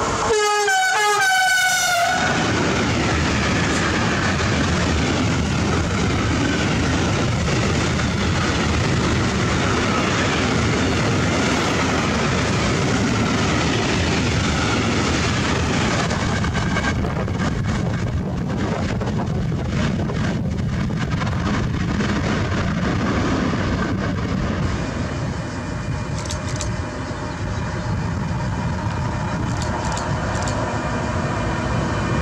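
A Siemens Vectron electric locomotive sounds a short horn blast as it passes, its pitch dropping slightly, then a long freight train of open wagons rolls by with steady wheel-on-rail noise. Near the end the rolling noise gets quieter and a few steady tones come in.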